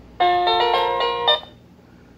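Hampton Bay electronic door chime playing about a second of its melody through its small speaker, then cutting off abruptly when the button is released. With the diode removed, the chime sounds only while the button is held down and does not finish its full tune.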